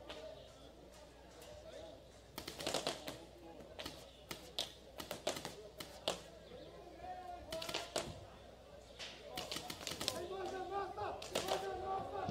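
Paintball markers firing in quick strings of sharp pops, several separate bursts from a couple of seconds in. Players' voices call out across the field, loudest near the end.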